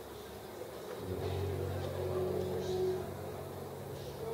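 Organ holding low sustained notes that come in about a second in and carry on steadily, with a higher held tone above them for a couple of seconds.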